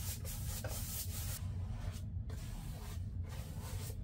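Paintbrush stroking white paint over a cardboard pizza box: a soft brushing rub, broken by two short pauses between passes.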